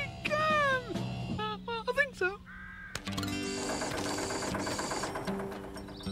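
Animated characters' voices shouting the last word of a cheerful group chant, then short sing-song vocal sounds. About halfway through, a light background music cue starts and plays on.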